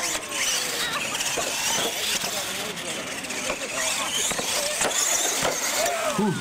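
Two R/C monster trucks racing at full throttle, their electric motors and gear drives whining steadily. The whine wavers in pitch as they run.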